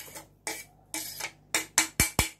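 Chopped red pepper scraped off a plastic cutting board into a plastic bowl: a few short scrapes and knocks, the sharpest near the end.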